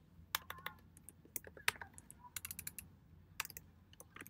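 Computer keyboard being typed on, in irregular bursts of quiet key clicks.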